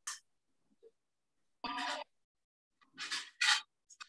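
A few short breathy sounds from a person, like breaths or puffs on a microphone: one at the very start, a brief voiced one near the middle, and two close together near the end.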